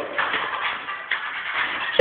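Muffled music playing in the background, with no clear tune or voice standing out.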